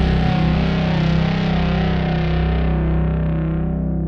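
Heavily distorted electric guitar holding a final doom metal chord and letting it ring out. Its upper tones die away over the last couple of seconds while the low notes keep sounding.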